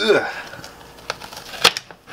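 A kitchen knife forced down through a hard-frozen ice cream cake with a cereal-and-marshmallow crust and white chocolate bark, giving a few sharp clicks and cracks. The loudest is about a second and a half in.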